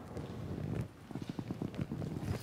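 Footsteps on a tiled floor: a quick series of short, sharp steps from about a second in.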